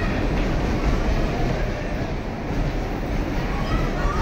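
Bumper cars rolling across the rink floor, a steady low rumble.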